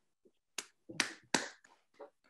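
A person clapping hands, heard over a video-call audio link: three sharp claps about a third of a second apart, then softer claps trailing off.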